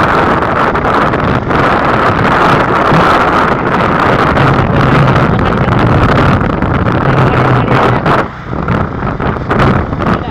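Wind rushing over the microphone of a moving road vehicle, with engine noise underneath; a low steady engine note comes through in the middle, and the noise drops briefly near the end.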